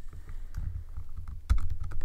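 Computer keyboard keystrokes: a few scattered key clicks, the loudest about one and a half seconds in, over a steady low hum.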